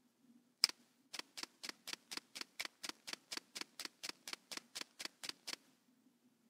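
Computer mouse clicked once, then clicked rapidly and evenly, about four clicks a second for some four seconds, refreshing a screen over and over.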